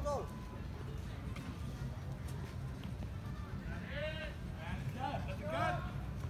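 Street ambience with a steady low rumble and distant raised voices calling out, once at the start and several times in the last two seconds.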